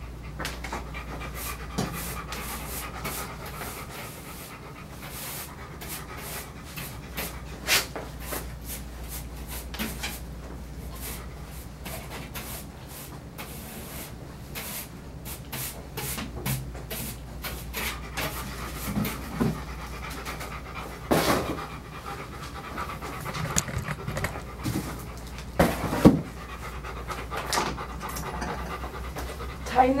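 Golden retriever panting steadily while being groomed, with scattered sharp clicks and knocks of grooming tools against the table.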